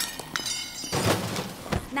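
Sound effects of a sudden scuffle: a clinking, breaking clatter in the first second, then heavy thumps and a sharp knock near the end.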